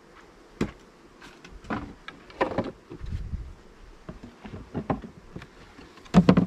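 Wooden beehive equipment knocking and clattering as boxes, covers and a frame feeder are handled and set down: several sharp wooden knocks and a low thud. Honey bees buzz faintly throughout.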